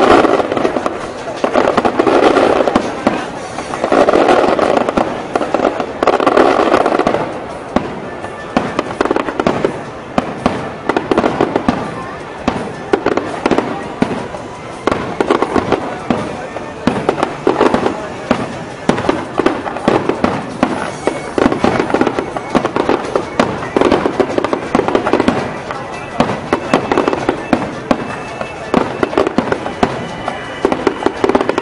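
Aerial fireworks display: a dense, rapid run of shell bursts and crackling, heaviest in the first seven seconds or so, then a steadier stream of bangs and crackle.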